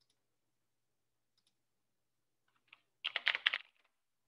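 Typing on a computer keyboard: a few faint separate key clicks, then a quick burst of keystrokes lasting about half a second near the end.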